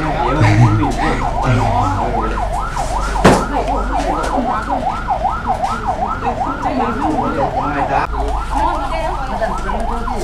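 Ambulance siren in a fast yelp, its pitch rising and falling about three to four times a second without a break. A single sharp knock comes about three seconds in.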